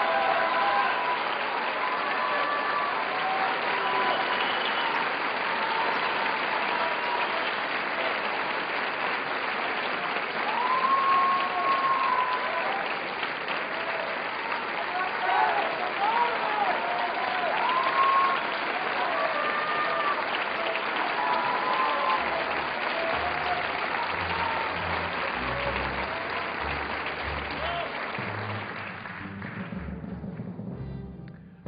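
Concert-hall audience applauding steadily, with scattered shouts and cheers rising above the clapping. The applause dies away near the end.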